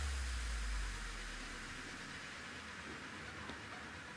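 Quiet room tone: a faint steady hiss, with a low hum fading away over the first second and a half.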